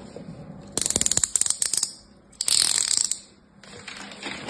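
Knife tip working at the plastic film around bars of soap: a rapid run of sharp ticks and clicks for about a second, then a short crinkly rustle of the plastic wrap.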